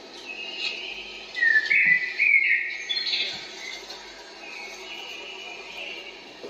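High-pitched whistling: a few short notes stepping upward in pitch, loudest early on, then a fainter, longer held tone.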